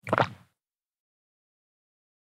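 A single short pop sound effect, about half a second long, at the very start.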